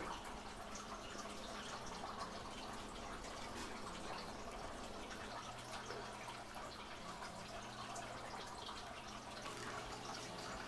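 Faint, steady background hiss of a small room with a low hum and light scattered clicks; no distinct event stands out.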